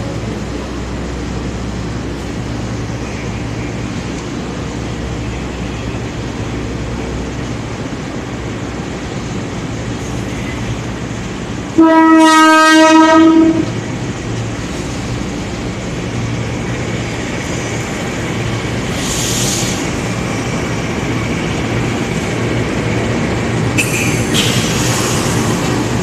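Passenger coaches rolling slowly past behind a diesel locomotive, with a steady low rumble and clatter of wheels on the rails. About halfway through comes one loud train horn blast lasting nearly two seconds.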